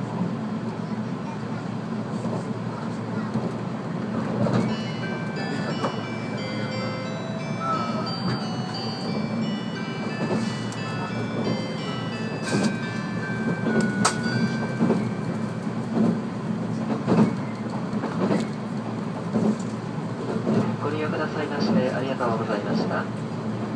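A music-box-style chime melody, a run of short stepped notes played over a train's public-address speaker, heralding the arrival announcement. Underneath is the steady running noise of the 485-series electric train, with the wheels clicking over rail joints now and then.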